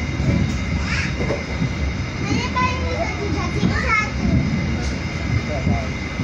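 Steady low rumble of a moving passenger train heard from inside the carriage, with children's voices calling and chattering over it several times.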